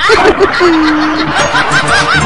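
Several voices laughing loudly together, in quick repeated ha-ha bursts over a dense crowd-like noise, typical of canned laughter in a radio comedy.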